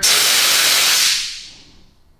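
Nitrous oxide bottle venting: a sudden hiss of escaping gas that holds for about a second, then fades away over the next second.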